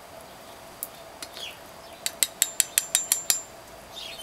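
Metal spoon clinking against a metal cook pot of coffee: a quick run of about nine light taps in just over a second, starting about two seconds in, one of them ringing briefly.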